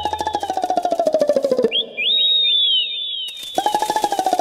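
Cartoon sound effects: a falling, fluttering whistle tone that slides down over about a second and a half, then a run of quick high falling whistles, then the falling fluttering tone again.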